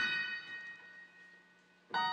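Casio electronic keyboard playing high notes. A chord struck at the start rings and fades away over about a second and a half, then a new chord with a lower note is struck near the end.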